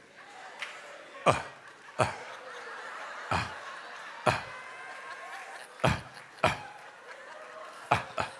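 Congregation laughing and chuckling in a large hall, with six sharp knocks at uneven gaps of about a second.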